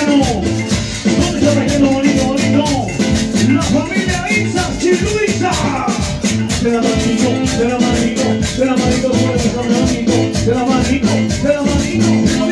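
Live cumbia music from a band playing for dancers, with a steady dance beat of bass pulses and rapid, evenly spaced percussion strokes under sustained melody.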